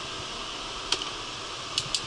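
Steady rushing air from the bed bug heat-treatment heaters and fans blowing hot air into the room. There is a sharp click about a second in and two quick clicks near the end as things in the headboard cubby are handled.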